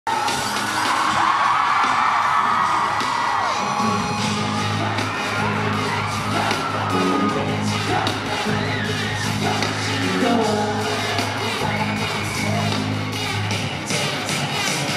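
Live pop concert sound in an arena: music over the PA with a crowd cheering, and a sustained deep bass note coming in about four seconds in.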